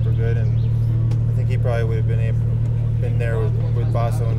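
A steady low engine hum runs throughout, with people talking over it.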